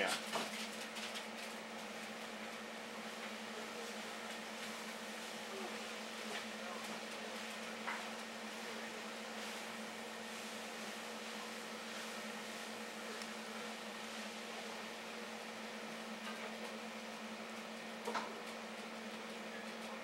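Steady low mechanical hum with an even hiss, as of aquarium equipment running, with a couple of faint clicks.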